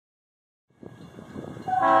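Leslie air horn of a CN GE C40-8W freight locomotive starting to blow about a second and a half in, a loud chord of several steady notes, after a faint low rumble.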